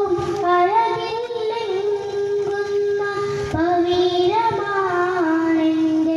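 A boy singing a madh, a Malayalam devotional song in praise of the Prophet, solo into a microphone. He holds long notes that slide and waver, with a short breath about halfway through.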